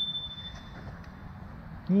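A handlebar bicycle bell struck once, its single high ring fading out within the first second.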